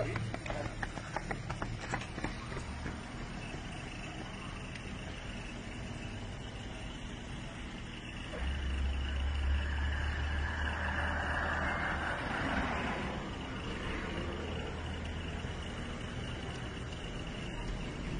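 Outdoor street noise of road traffic: a steady low rumble that grows louder for about five seconds halfway through, then eases. A few light clicks sound in the first two seconds.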